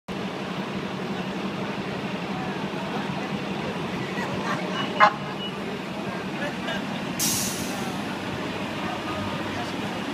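City street traffic with a steady low engine hum, a single sharp knock about five seconds in and a short burst of hissing air a couple of seconds later, under faint chatter.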